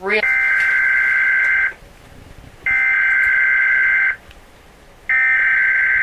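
Three long, steady, high-pitched electronic beeps, each about a second and a half long, with a pause of about a second between them: a "we interrupt this broadcast" attention tone.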